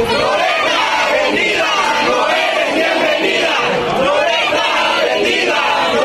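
A crowd of protesters shouting over one another, many loud voices overlapping without a break.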